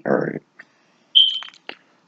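A single short, high-pitched beep a little over a second in, fading quickly, after the end of a man's word.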